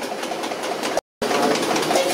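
Busy background noise, broken by a moment of dead silence about a second in where the audio is cut.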